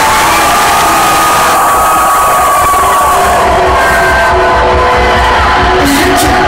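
Rock concert crowd cheering and screaming loudly, with long high screams over the noise, as the band's intro music plays. A low pulsing beat comes in about halfway through.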